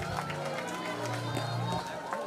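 Congregation voices murmuring and chattering in a large hall over a held low instrument note that stops near the end, just after the singing ends.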